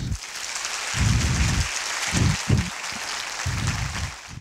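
Audience applauding at the close of a talk, a steady clapping that fills the hall, with a few low rumbles mixed in.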